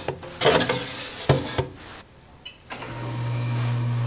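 Metal freeze-dryer trays knocking against the rack as they are slid in, a few short clatters. After a brief silence, about three-quarters of the way through, a Harvest Right freeze dryer starts a steady low hum as it runs in its freezing stage.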